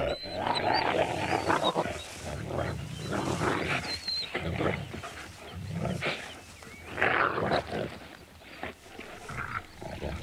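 Wolves growling and snarling as they play-fight, in irregular rough bursts with a few faint high whines.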